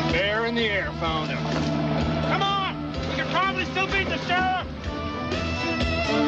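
Rock-flavoured guitar score music with wordless men's shouts and whoops rising and falling above it, several short cries about two to four and a half seconds in.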